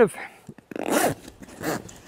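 Zipper of a military surplus patrol pack being pulled closed around its main compartment: a rasping run about a second in, then a couple of shorter pulls.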